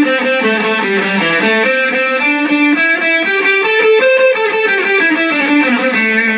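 Electric guitar playing the A minor pentatonic scale as single notes along one string, each note alternate-picked, in a steady run that climbs and descends the neck.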